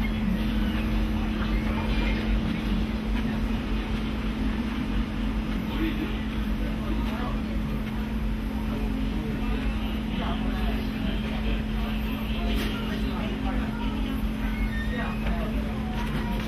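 A steady low hum with a low rumble beneath it, and faint, indistinct voices in the background.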